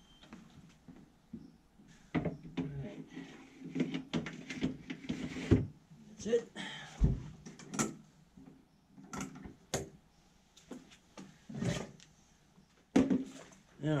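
A string of irregular knocks and clunks as a Masterbuilt digital electric smoker is handled at its side, with a door or drawer-like part opening and closing.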